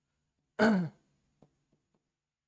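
A man's short sigh with a little voice in it, falling in pitch and lasting about a third of a second, about half a second in.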